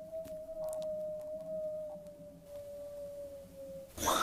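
A single long electronic-sounding tone from a phone app, slowly falling in pitch and cutting off near the end, with a few faint clicks.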